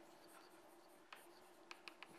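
Near silence: lecture-hall room tone with a faint steady hum and a few soft ticks, one about a second in and two near the end.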